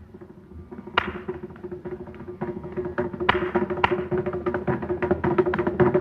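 Mridangam playing, soft at first, then a sharp stroke about a second in and a quickening, louder run of strokes over a steady drone pitch.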